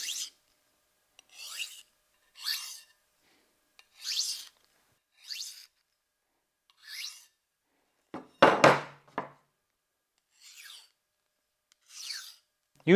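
Steel knife blade drawn in single strokes along a steel honing rod and across a handheld diamond sharpening plate, each stroke a short rasping scrape, roughly one a second. About two-thirds of the way through comes a louder knock, with more low end than the scrapes.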